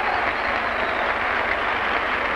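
A large audience applauding steadily.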